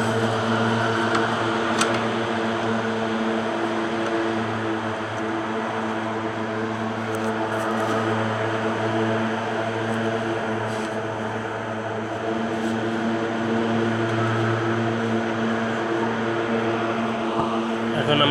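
Steady low machine hum, with a few even pitched overtones held unchanged throughout, like a fan or motor running. A few faint clicks of handling.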